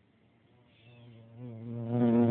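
A bee buzzing close to a doorbell camera's microphone, a wavering buzz that grows louder from about half a second in as it comes nearer.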